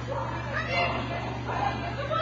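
High-pitched voice calling out in short, drawn-out cries, several times, over a steady low hum.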